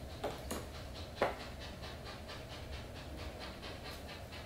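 Cloth garment being lifted out of a cardboard box and unfolded by hand: a few short rustles and handling knocks in the first second or so, then a faint quick scratching at about five strokes a second.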